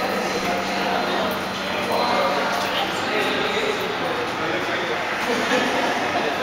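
Indistinct voices of people talking, with no clear words.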